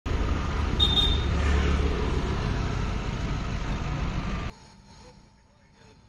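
Road traffic noise with voices mixed in, and a short high-pitched tone about a second in. It cuts off abruptly about four and a half seconds in, leaving only a faint background.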